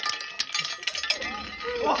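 Sharp metallic clinks and a brief ringing from a cast iron skillet in the first second, followed by startled voices as the pan flares up.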